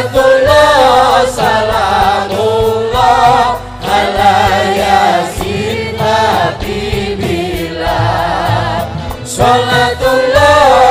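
Sholawat, Islamic devotional singing: voices sing a wavering melody over band accompaniment with repeated percussion hits.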